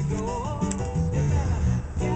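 A recorded pop song with guitar and bass playing back over speakers in the room.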